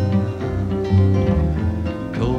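Acoustic guitar accompaniment of a folk song, plucked notes ringing on between sung lines.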